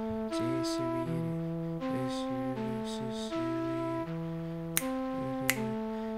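Synthesized flute from FL Studio's Sytrus 'Flute' preset playing a slow minor-key melody, one held note after another. Two short clicks come near the end.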